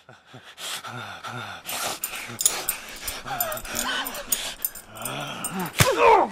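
Rapid, repeated growling and snarling, several short rasping growls a second, with sharp knocks and rustles over it.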